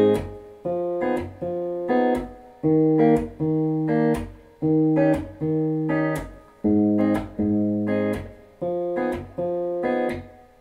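Clean electric guitar (Epiphone Les Paul, capoed at the third fret) picked as an arpeggio: a bass note, then the third, second and first strings, about three notes a second. Each group of four notes is repeated four times over every chord.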